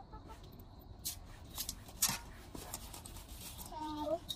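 Soft scratching and scraping of dry dirt being scooped by hand in metal basins, with a few sharp light taps. A brief pitched call comes near the end.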